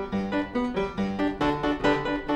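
Fortepiano playing a quick Classical-era piece: a steady run of separate notes, about four to five a second, with lower bass notes joining about halfway through.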